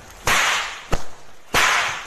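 Three sharp whip-like cracks in a music soundtrack, each followed by a hissing swish that fades, spaced a little over half a second apart.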